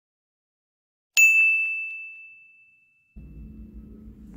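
A single bright bell-like ding sound effect, struck about a second in, ringing on one high pitch with fainter overtones and fading away over about two seconds. Near the end a low room hum comes in.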